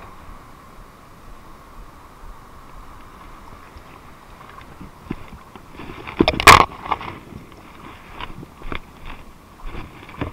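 Steady wind noise on a body-worn camera. About six and a half seconds in comes a loud scuffing knock, then a few lighter clicks and knocks, as the camera is jostled while the wearer clambers over rocks.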